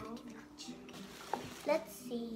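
A young girl's voice: a drawn-out vocal sound trailing off at the start and a short exclamation near the end, with a light click in between as she handles a book.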